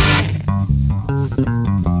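Instrumental rock music: the full band cuts out just after the start, leaving a lone plucked bass guitar line of quick notes stepping up and down in pitch.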